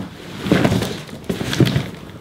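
Packing a suitcase by hand: a few dull thumps and knocks amid rustling as things are pushed into the case, about half a second in and again around a second and a half in.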